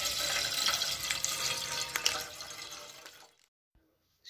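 Milk pouring in a steady stream from a plastic packet into a stainless steel pot of milk, splashing, fading out about three seconds in.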